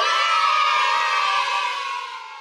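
A group of children cheering together in one long shout that slowly fades out.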